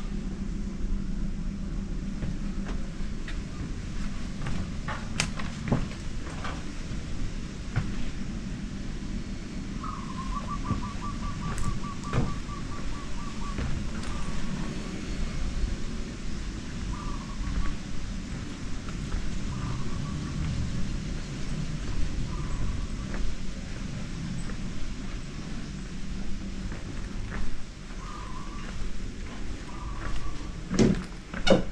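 Outdoor ambience under a steady low rumble. About ten seconds in, a bird gives a rapid trill of repeated notes, then short calls every few seconds; a few sharp knocks sound early on and near the middle.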